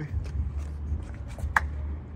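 Footsteps on a concrete sidewalk as a man walks off, with a sharper scuff about one and a half seconds in, over a steady low hum.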